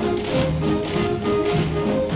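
An ensemble tap-dancing in unison, the taps striking the stage floor in a quick, even rhythm of about four a second, over a band playing an upbeat show tune.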